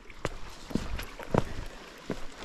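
Footsteps over creek-bed rocks and dry grass, with three distinct steps landing about half a second to a second apart.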